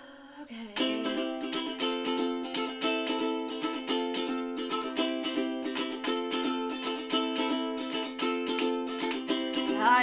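Ukulele strummed in a steady, even chord pattern, starting about a second in: the instrumental intro to a song, played just after tuning.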